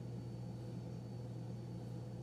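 Steady low hum with faint background hiss, unchanging throughout, with no distinct events.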